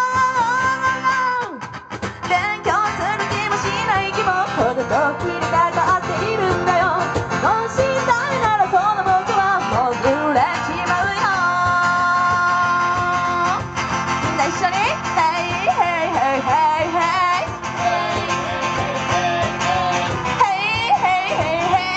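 A woman singing a J-pop song live into a microphone, with acoustic guitar and cajon accompaniment. She holds a long note at the start that breaks off about a second and a half in, and holds another long note around the middle.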